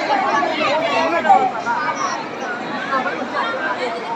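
Many voices talking at once: crowd chatter in a large hall, with no single voice clear.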